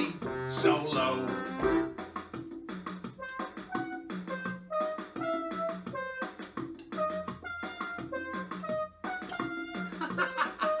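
Electronic keyboard playing a fast instrumental solo: a melody of short, separate notes over a repeated low note.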